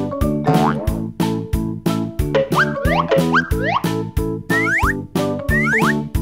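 Upbeat children's background music with a steady beat, with short rising swoops repeated through it.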